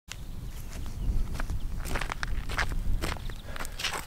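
Footsteps on grass: a scatter of short soft crackles over a steady low rumble.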